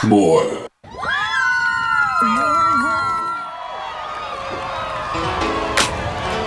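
Pop dance track cuts off abruptly, then after a brief silence a small group of young people cheer and whoop together in held, rising shouts, followed by talking. Music comes back in near the end.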